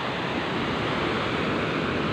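Small ocean waves breaking and their foam washing up a sandy beach, a steady rush of surf.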